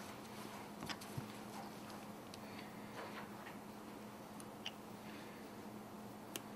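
A few faint, sharp clicks of metal dissecting instruments being handled, over a low steady hum.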